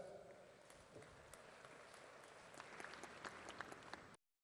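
Faint, scattered applause from a seated audience, picking up slightly in the last second or so.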